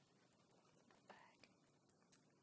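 Near silence: quiet room tone with a few faint ticks and one brief faint sound about a second in.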